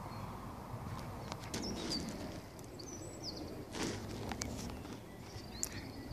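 Outdoor garden ambience with a few short, high bird chirps scattered through it, and soft footsteps with a brief rustle or knock about four seconds in.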